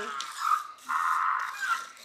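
Novie interactive robot toy responding to a hand gesture: a short electronic chirp, then a buzzy sound lasting about a second.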